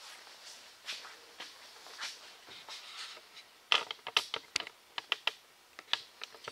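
A meter stick being slid and handled on a metal layout table: faint soft scraping, then about two seconds of quick, light clicks and taps from about halfway in.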